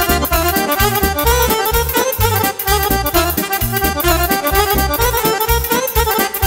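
Live Romanian party music in an instrumental break: accordions carry the melody over keyboard bass and a steady dance beat.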